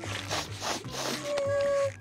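A cartoon character sniffing several quick times, then a short held tone, over soft background music.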